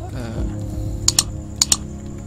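Keystrokes on a computer keyboard: two pairs of quick clicks, about a second in and again about half a second later.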